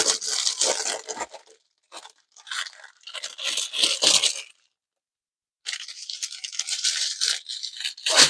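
Clear plastic packaging crinkling and crackling as it is pulled open and handled, in bursts with a pause of about a second in the middle.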